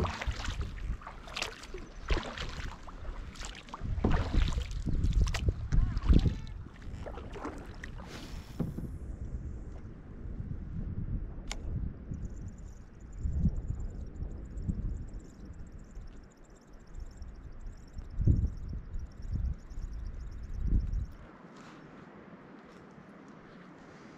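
Kayak paddling on a lake: paddle strokes and water splashing and knocking against the plastic hull, with wind buffeting the microphone, busiest in the first several seconds and easing off after that. Near the end it drops to a faint steady hiss.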